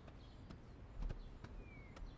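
Faint, scattered footsteps and a few soft knocks as several people walk across a room and sit down.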